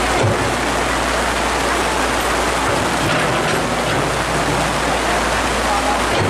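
Heavy rain pouring down, a dense, steady hiss.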